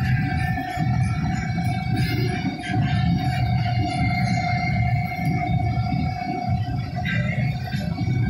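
Red axial-flow combine running under load while threshing soybeans, heard from inside its cab: a steady low drone of engine and threshing machinery with a steady whine over it that fades about seven seconds in.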